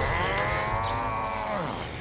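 An animated robot character's long, drawn-out growl of rage, rising then falling away near the end, over a crackle of electricity from his fist smashed into a wall.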